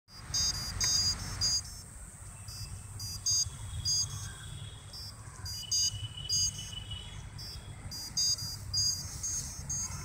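Hexacopter's electronics sounding a series of short, high electronic beeps in irregular groups while its motors stay stopped, over a low wind rumble on the microphone.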